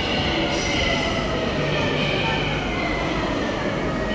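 Suburban train coming into an underground station: a steady rail rumble echoing under the roof, with a whine that falls slowly in pitch as the train slows.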